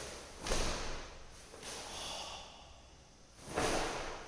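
A karate practitioner's kata movements: two short, forceful exhalations with the swish of the gi, about half a second in and again near the end. The first comes with a low thud of a bare foot stamping down on the mat after a knee lift.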